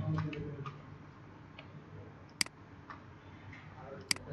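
A computer mouse button clicking: one sharp click about two and a half seconds in, with a few fainter ticks, over a low steady room hum.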